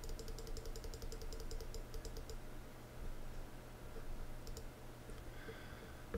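Computer mouse clicking: a quick, even run of clicks for about two seconds, then a few single clicks, as the tuning step buttons of a web SDR are pressed repeatedly. A low steady hum lies underneath.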